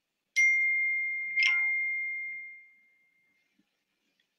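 Two chime tones: a high ding about a third of a second in, then a second, fuller ding with lower tones about a second later, both ringing out and fading away within about three seconds.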